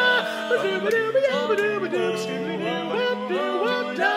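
Male barbershop quartet singing a cappella in close four-part harmony: a wordless scat passage, with the voices sliding between pitches.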